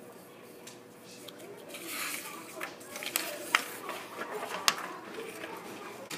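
Sheets of paper rustling as they are handled and cut with scissors, with a few sharp clicks of the blades partway through.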